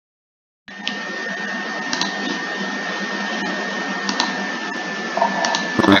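Steady background hiss with a thin, high, constant whine, starting just under a second in, with a few faint clicks.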